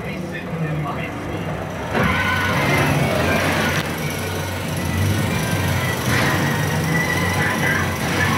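Movie trailer soundtrack playing through cinema speakers: music with voices in the mix, turning louder about two seconds in.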